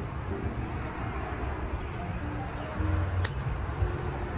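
A tobacco pipe being lit with a lighter, over a low steady outdoor rumble, with one sharp click a little over three seconds in.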